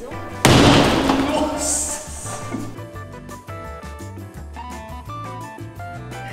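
A fist punching a plasterboard (drywall) wall once: a sudden loud thump about half a second in that fades over a second or so, over background music.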